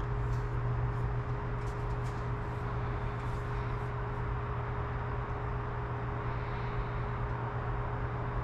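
Steady low background hum with a thin constant tone above it and an even noise haze, with a few faint ticks in the first couple of seconds.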